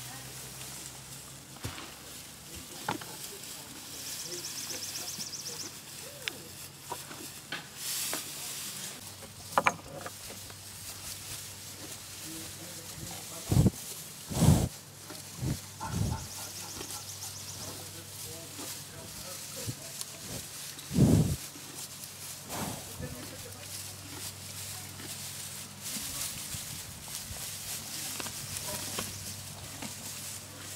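Donkeys chewing hay, with crackling and rustling of dry straw. A few loud low puffs of breath hit the microphone near the middle, as a donkey's nose comes right up to it.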